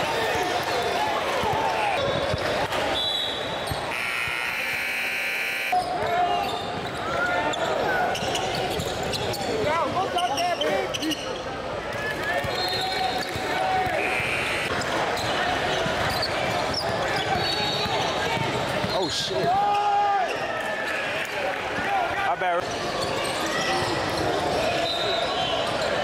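Basketball game sounds in a large gym: a ball being dribbled on the hardwood floor and sneakers squeaking in short bursts, under continuous chatter and calls from players and spectators.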